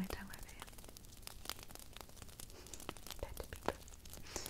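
Fingers handling a glitter-topped prop dragon egg close to the microphone: a rapid, irregular run of small taps, clicks and scratchy crackles.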